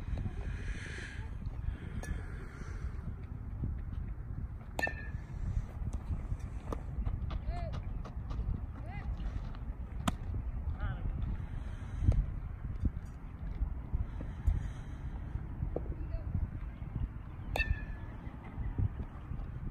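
Outdoor ballfield sound with a steady low wind rumble on the microphone and faint, far-off voices of players and coaches. Three sharp smacks stand out, one about ten seconds in as a baseball is caught in a leather glove at first base.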